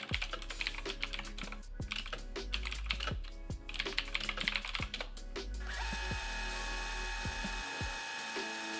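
Typing on a computer keyboard: a quick, irregular run of key clicks. About six seconds in, the clicks stop and a steady, even hum takes over.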